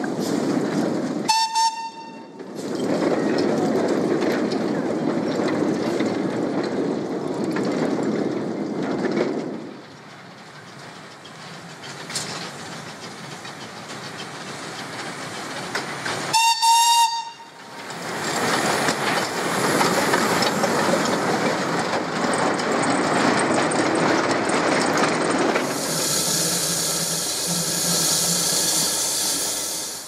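A small narrow-gauge steam locomotive gives two short whistle blasts, about fifteen seconds apart. Between them come the steady rumble and clatter of its train of open wagons rolling on the track.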